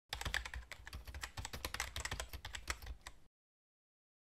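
Typing on a computer keyboard: a quick, irregular run of key clicks that stops abruptly after about three seconds.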